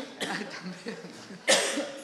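A person coughing once, a short loud cough about one and a half seconds in.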